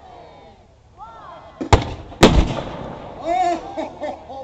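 FV433 Abbot self-propelled gun's 105 mm gun firing: two loud bangs about half a second apart, the second louder with a longer rumbling tail.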